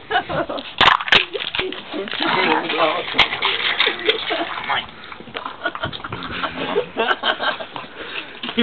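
People talking, with a few sharp clicks or knocks about a second in and again around three seconds.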